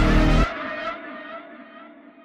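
End of a hip-hop track: the full beat cuts off suddenly about half a second in, leaving a muffled, thinning tail of the music that fades away.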